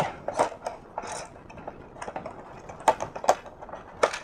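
Plastic packaging being handled: a thin plastic tray and a clear plastic bag crinkling, with scattered small clicks and two sharper clicks about three seconds in.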